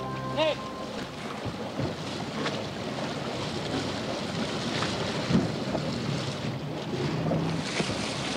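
Water splashing and churning as a hooked yellowfin tuna thrashes at the surface beside a boat's hull, over a steady rush of water and wind on the microphone. A short shout comes near the start.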